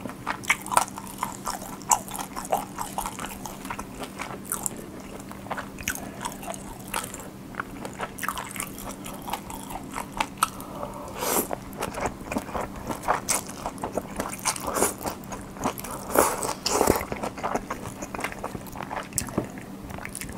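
Close-miked chewing of cold ramen noodles: a steady run of small wet smacks and clicks from the mouth.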